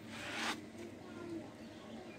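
A short rubbing swish that swells and stops about half a second in, then faint rustling.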